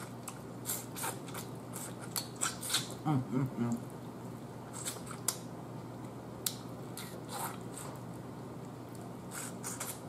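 Close-up eating sounds of a person sucking meat off turkey neck bones: scattered wet lip smacks, sucks and mouth clicks. A short hummed 'mm' comes about three seconds in.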